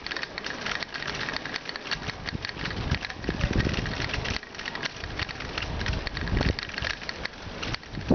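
Bicycle rattling as it rolls over cobblestones: a dense, fast, uneven jitter of small knocks, with heavier low rumbles about three and six seconds in.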